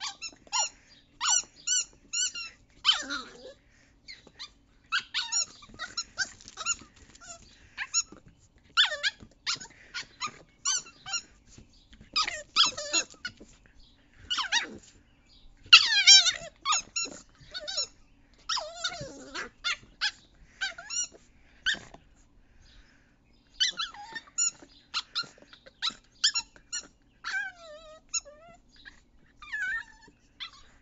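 A puppy chewing a green rubber squeaky bone toy, squeezing out quick runs of short, high squeaks again and again, with a few longer squeaks that slide down in pitch.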